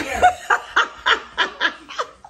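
A person laughing: a quick run of about seven short ha-ha pulses, roughly three a second.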